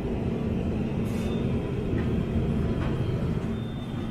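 Steady low rumble and hum of a supermarket's background noise beside the chilled drinks shelves.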